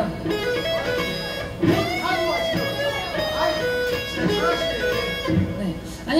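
Electric guitar played through an amplifier: a lead riff of picked notes, one after another, with some notes held.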